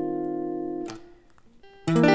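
Clean electric guitar: an E-flat 6/9 chord rings and fades, is choked off about a second in, a few faint notes follow, then a new chord is struck just before the end, the E half-diminished passing chord leading toward F minor 9.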